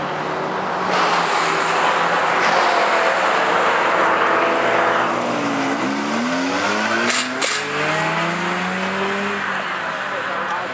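Several cars lapping a race circuit, engines revving through the gears: their pitch drops as they downshift and brake, then climbs as they accelerate out toward the corner. A loud rushing noise fills the first half, and two short sharp cracks come about seven seconds in.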